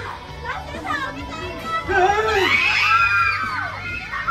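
A group of children shouting and squealing together, many high voices rising and falling over one another, loudest from about two seconds in.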